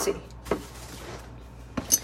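Two light knocks about a second and a half apart as seasoning containers are handled on a kitchen counter, one set down and the next picked up.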